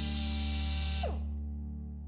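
Cordless drill driving a screw, its motor running steadily, then winding down and stopping about a second in, over soft background music.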